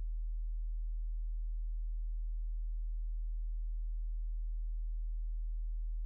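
A steady low hum: a single deep tone that holds at one pitch and level.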